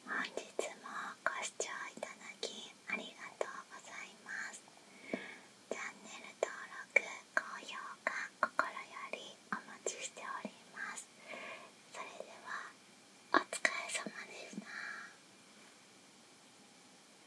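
A woman whispering close to the microphone in short breathy phrases, with small mouth clicks, falling quiet about a second before the end.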